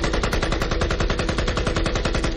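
Rifle firing on automatic: a continuous rapid burst of shots, about a dozen a second.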